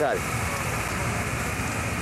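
Steady hissing rush from gas-fired vertical gyro broilers and sizzling meat, over a low rumble, with a brief voice at the very start.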